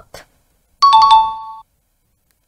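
Electronic chime sound effect: a bright high note with a lower note following a moment later, both ringing for under a second, about a second in.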